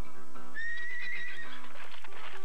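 A horse whinnying once, a single high wavering call lasting about a second, over background music.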